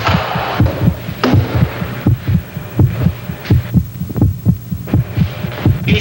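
Heartbeat sound effect: a fast, steady lub-dub thumping, about three to four beats a second, standing for a racing, frightened heart. A few sharper knocks sound over it.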